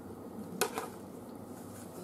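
A single light knock against a deep fryer's wire basket about half a second in, as spring rolls are set into it. Faint steady background noise lies under it.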